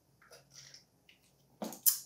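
A man swallowing water from a drinking bottle in faint gulps, then two short sharp sounds near the end.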